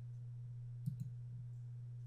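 Two quick computer mouse clicks about a second in, over a steady low hum.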